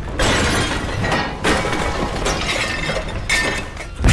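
Earthquake sound effects from a film soundtrack: a low rumble under a dense clatter of objects crashing and glass shattering, in two surges with a brief lull between.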